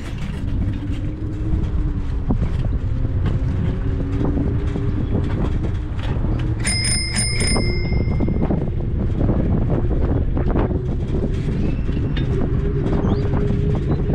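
Bicycle bell rung in about four quick strokes about halfway through, ringing on for a second, as a warning to walkers on the path ahead. Under it runs a steady low rumble of wind and riding.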